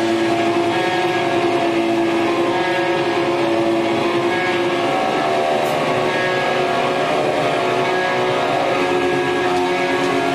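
Live post-hardcore band's distorted electric guitars holding loud, droning sustained chords, with little drumming. The chord changes about five seconds in and again near the end.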